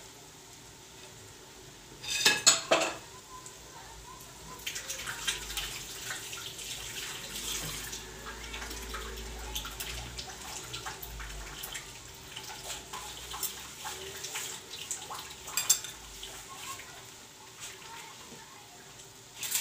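Oil sizzling and crackling around potato maakouda patties shallow-frying in a frying pan, the crackle thickening about four and a half seconds in and running on steadily. A brief metallic clatter about two seconds in is the loudest sound, and two sharp clinks come late on.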